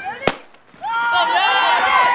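A starting pistol fires once, a single sharp crack, setting off a cross-country race; from about a second in, many voices shout and cheer as the runners leave the line.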